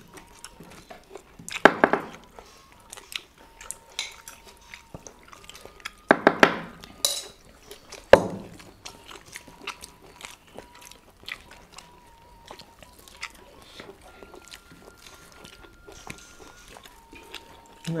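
Chewing and the light clicks and clinks of plates, bowls and serving spoons as people eat by hand. A sharp knock comes about eight seconds in, and there are a few short murmured voices around two and six seconds in.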